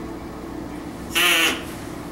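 A duck call blown once as a game-show buzzer: a single short quack with a wavering pitch, a little over a second in.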